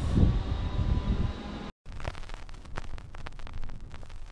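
Wind buffeting the camera microphone, a low rumbling rush. About two seconds in it cuts off abruptly to a quieter stretch of faint scattered clicks and crackles.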